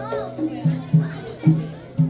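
Traditional Malay drum music, hand drums (gendang) beaten in a steady pattern of deep pitched strokes, roughly two a second, with voices in the hall over it.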